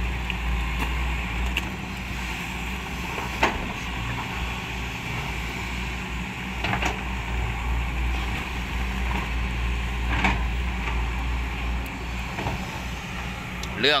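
Sany crawler excavator's diesel engine running steadily under hydraulic digging load in mud, with a sharp knock about every three seconds.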